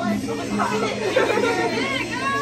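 Several people chattering and calling out over one another, with high-pitched voices in the second half.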